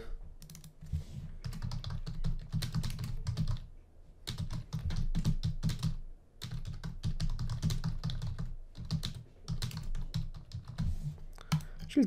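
Typing on a computer keyboard: quick runs of keystrokes broken by short pauses about four and six seconds in.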